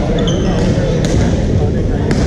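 Badminton racket striking the shuttlecock, a sharp click about a second in, with a brief high squeak of court shoes near the start, over the steady din of voices and play in a large sports hall.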